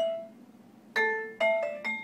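Metal-bar mallet instrument played with yarn mallets: one note rings out and fades, then about a second in four struck notes follow in quick succession, each ringing on into the next.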